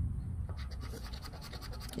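A poker chip scraping the coating off a scratch-off lottery ticket: soft, steady scratching as the winning numbers are uncovered.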